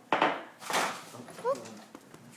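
Two hard gusts of breath blown at lit trick birthday candles: a short one at once, then a longer one just after half a second. The candles will not go out.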